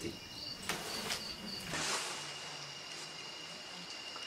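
Crickets chirping faintly: a steady high trill, with short higher chirps in the first two seconds and a couple of soft clicks.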